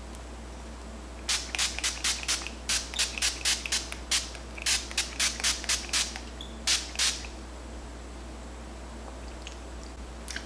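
Lace tint spray in medium brown being sprayed onto a wig's lace in short spritzes. About twenty quick bursts come in a row, a few per second, starting about a second in and stopping about seven seconds in.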